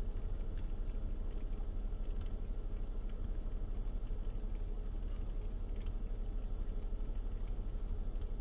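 Steady low rumble inside a car cabin, with faint mouth sounds of someone eating a spoonful of ice cream.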